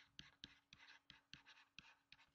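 Faint scratching and tapping of a stylus writing on a pen tablet, in short irregular strokes several times a second.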